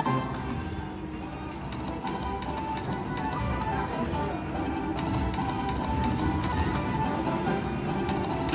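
Extreme Wild Lanterns video slot machine playing its game music and reel-spin tones as the reels spin, a steady run of sustained electronic notes.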